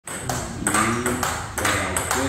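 Table tennis rally: the ball clicking sharply off the paddles and the table, about six hits in two seconds at an even back-and-forth pace.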